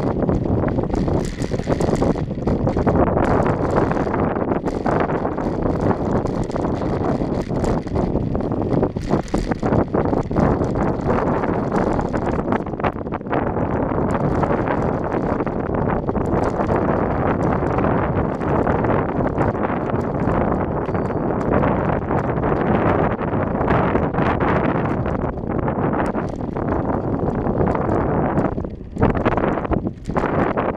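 Wind buffeting the microphone of a bicycle-mounted camera while riding, a loud steady rushing with scattered knocks and rattles from the ride over the street. It dips briefly near the end.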